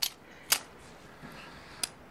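A pistol misfiring: the hammer falls and the gun clicks without firing, three sharp clicks, the loudest about half a second in.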